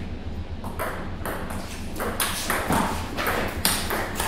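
Table tennis ball clicking off paddles and the table in a fast rally, about seven sharp hits less than half a second apart. A low steady hum runs underneath.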